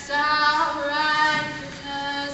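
High school a cappella ensemble singing, several voices holding chords together, coming in strongly just after the start.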